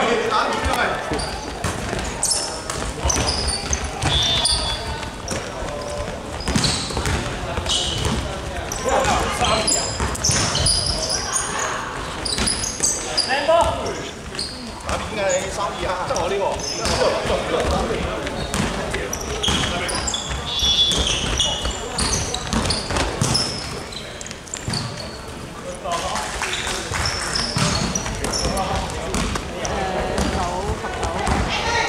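Sounds of a basketball game on a hardwood court in a large hall: a ball bouncing, players' footsteps and short high squeaks, and indistinct voices calling out across the court.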